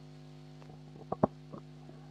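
Handheld microphone being passed and gripped: a few handling knocks, with two sharp thumps close together about a second in, over a steady electrical hum from the sound system.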